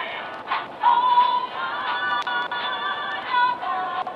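Music: a singing voice holding long notes with vibrato, moving to a new pitch every second or so.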